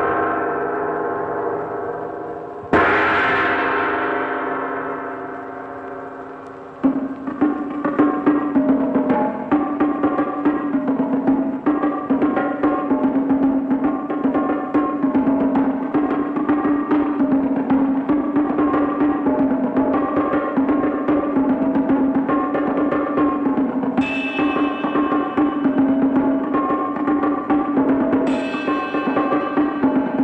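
A large hanging gong struck and left ringing, dying away over about four seconds. From about seven seconds in, fast drum-led percussion music with a steady low drone takes over, with two bright crashes near the end.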